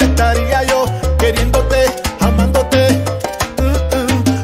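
Salsa music from a full salsa band, with a bass line in short held notes under pitched melody lines and steady percussion.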